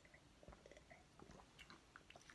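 Faint, wet mouth clicks and swallowing from a man sipping cola from a glass and working it around his mouth to taste it, in a scatter of small irregular clicks.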